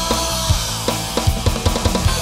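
Upbeat pop-rock band music: a drum kit drives a steady beat of bass drum and snare hits with cymbals, over sustained electric guitar and bass.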